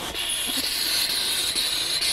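A loud, bright, steady hiss that has swelled in gradually and holds level.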